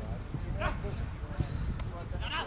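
Outdoor football match sound: a player's short shouted call carrying across the pitch, over a steady low rumble of wind on the microphone. Two sharp knocks come in the second half, the kind a kicked ball makes.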